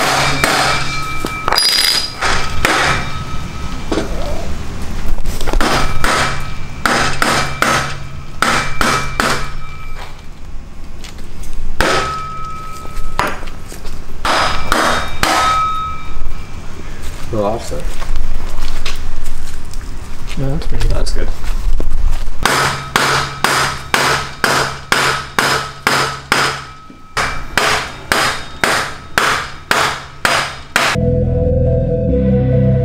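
Hammer striking a wooden block held against metal exhaust tips, knocking the tips onto the car's exhaust pipes. The knocks come in irregular bunches, many followed by a short metallic ring, and near the end in a quick, even run of about three strikes a second.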